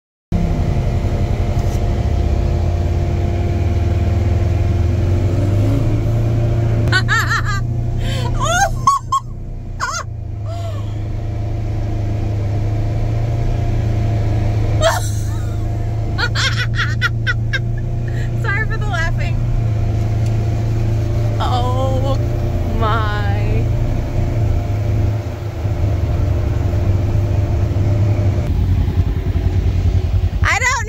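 An off-road vehicle's engine running with a steady low rumble, cutting in just after a moment of silence, with people's voices calling out at times over it.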